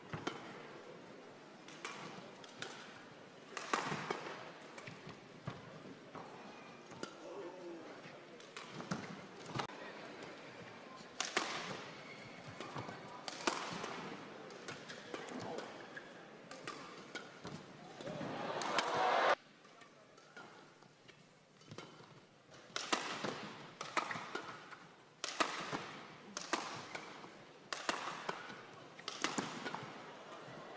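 Badminton doubles rally: sharp racket strikes on the shuttlecock in quick, irregular exchanges, with shoe squeaks on the court. The crowd noise swells about two-thirds of the way through as a rally builds, then cuts off suddenly. It rises again near the end.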